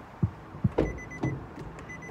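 Car door being opened: a few knocks and a louder clunk, then the car's door-open warning chime beeping in short repeated pulses from about a second in.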